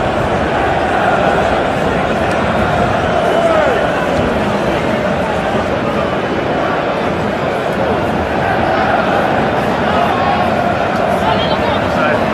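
Football stadium crowd heard from the stands: a steady din of thousands of voices, with individual nearby shouts standing out and a few more raised voices near the end.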